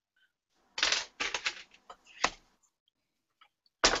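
Craft supplies being handled on a tabletop, most likely stamped paper and a plastic ink pad case: a quick, irregular run of rustles and clicks starting about a second in and lasting about a second and a half.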